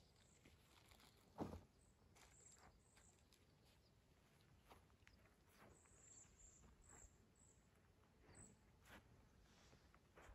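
Near silence with faint scattered rustles and ticks, and one soft thump about a second and a half in.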